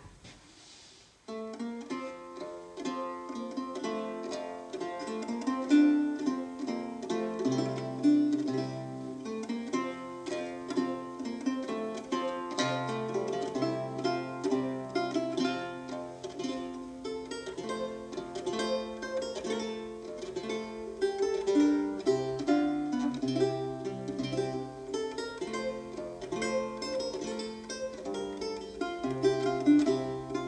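Solo Renaissance lute playing a padoana, a slow dance in duple time, in a run of plucked notes with a bass line beneath. It begins about a second in, after a short quiet.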